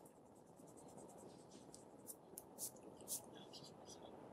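Faint writing on paper: a string of short scratchy strokes, a few louder ones about two and three seconds in, over a steady low room hum.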